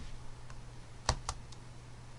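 Computer keyboard keystrokes: a faint click about half a second in, then two sharp key clicks in quick succession a little over a second in.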